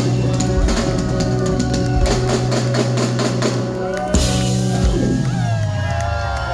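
Live ska band playing the close of a song: rapid drum and cymbal hits over a held bass note and guitar chord, with a sharp final hit about four seconds in and the chord ringing out. Crowd cheering and shouting start near the end.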